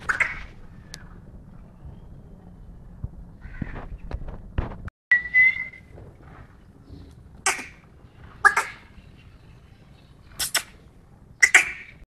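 Black francolin calling: short, sharp, high calls repeated at uneven intervals of a second or two, about six in all, with one brief held whistled note about five seconds in.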